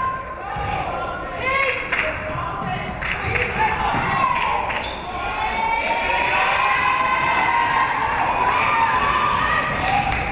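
Indoor basketball game play: a ball thuds on the hardwood court as it is dribbled and rebounded, while players and spectators shout and call out, their voices building over the second half.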